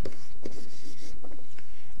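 Pen stylus scratching across a writing surface in several short strokes as letters are hand-written.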